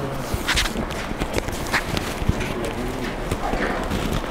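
Clip-on lavalier microphone being handled and repositioned on a cotton shirt: close, irregular rubbing and clicking noises straight into the mic.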